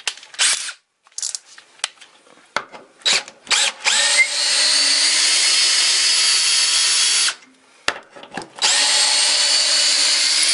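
DeWalt DCD780M2 18 V cordless drill/driver driving a long screw into a wooden block, running at a steady speed in two runs: one of about three seconds, then a short pause, then a second run starting near the end. A few clicks and knocks come before the first run.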